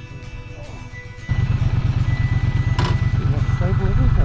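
Background music for about the first second, then a sudden cut to a Triumph Bonneville T120's parallel-twin engine running at low speed, a loud, deep, pulsing rumble.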